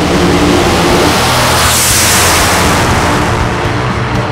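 Nitromethane-burning top fuel dragster engine, a loud, harsh roar that swells to its loudest about two seconds in.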